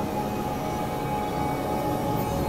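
Experimental electronic drone music: a dense, steady low rumble with several held tones above it, unchanging throughout, in the manner of an industrial noise piece.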